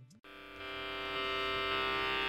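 A steady musical drone of many sustained tones fades in after a brief silence, opening a Carnatic-style devotional song.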